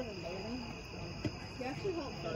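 Steady chorus of crickets at night, with faint distant voices of people talking and calling.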